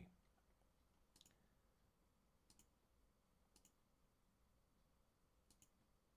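Near silence with four faint computer mouse clicks spread over the few seconds.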